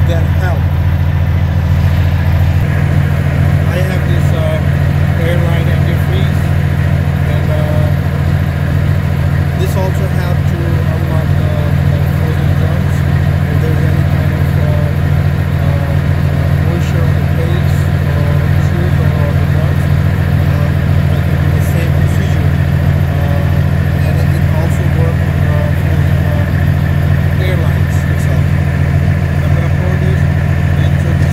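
Semi truck's diesel engine idling steadily close by, a constant low drone.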